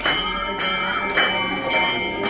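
Temple bell rung during aarti: struck repeatedly, about two strikes a second, over a steady metallic ring.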